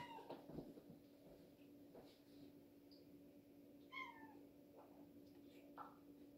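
A domestic cat meowing twice: a short call right at the start and another about four seconds in, each falling slightly in pitch. A faint steady hum runs underneath.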